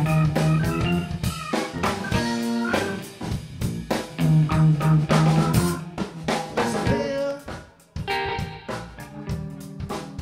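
Live funk band playing an instrumental passage: hollow-body electric guitar, electric bass, a drum kit with snare and rimshot hits, and keyboard. The band drops out briefly just before eight seconds in, then comes back in together.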